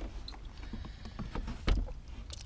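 Plastic bottle of auto transmission fluid being handled over the open shifter hole of a manual gearbox: scattered light clicks and knocks, with one sharper knock about three-quarters of the way through, just before the fluid is poured.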